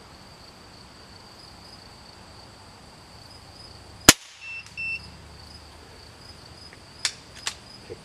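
.22 calibre air rifle firing a single shot about four seconds in, a sharp crack that stands out over a steady high-pitched background tone. Two short high beeps follow right after, then two light clicks about three seconds later.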